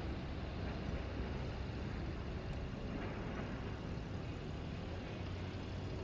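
Street traffic ambience: car engines running and vehicles moving along the road, a steady low rumble with road noise.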